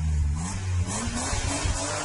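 A car engine revving as a sound effect, its pitch rising and then holding steady.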